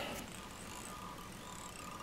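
Quiet room tone: a faint steady hiss with a faint high hum, and no distinct sound events.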